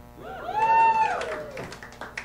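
A few audience members calling out together in reply to the comedian's greeting: overlapping drawn-out vocal calls, one high and strong, lasting about a second and a half.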